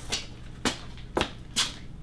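Four short knocks and rustles of a spray bottle and cloth being picked up and handled.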